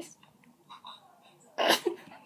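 A girl's stifled laugh: one short, sharp, breathy snort about one and a half seconds in, let out while she tries to hold it in during a phone call.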